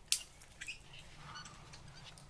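Quiet woodland ambience with a few faint, short bird chirps, and a single sharp click just after the start.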